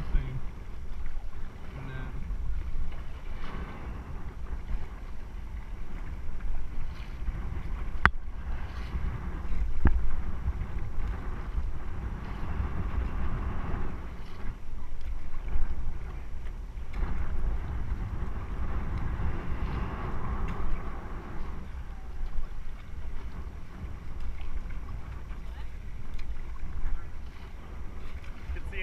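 Raft paddles dipping and splashing in the river as a crew paddles an inflatable raft, with wind buffeting the microphone throughout. A single sharp knock sounds about eight seconds in.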